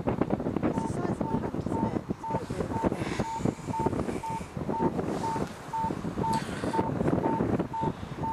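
Wind buffeting the microphone, with rustling handling noise, and a faint high beep repeating about twice a second.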